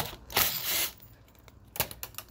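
Metal tool handling on a wheel bolt: a sharp click, a scrape of about half a second, then a couple of light clicks near the end, typical of a hex key being fitted to and worked on the bolt.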